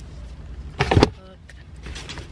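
A book being dropped into a cardboard box, giving one short thud with a papery rustle about a second in, over a steady low rumble.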